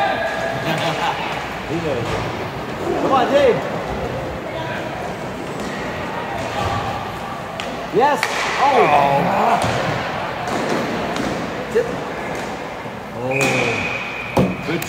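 Roller hockey play: sticks and puck knocking and thudding against the boards, with spectators shouting now and then. Near the end a short, steady referee's whistle stops play.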